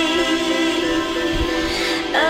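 Background music with steady, held chords.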